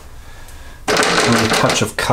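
About a second of loud, rapid rattling knocks starting partway through: an oil-paint brush being beaten against the brush-washer rack to shake out the thinner.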